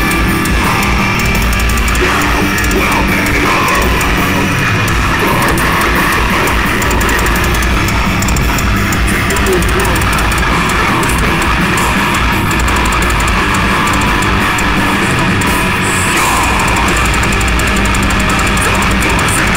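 Heavy metal band playing live at full volume: distorted electric guitars and a drum kit, with a vocalist on the microphone, heard from the crowd.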